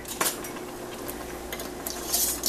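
Metal canning lids clinking as a hot lid is taken from a pan of lids and set on a filled glass jar. One sharp click comes shortly after the start, then a few faint light clicks near the end.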